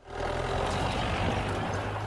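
A motor vehicle's engine running steadily: a low rumble under a broad hiss.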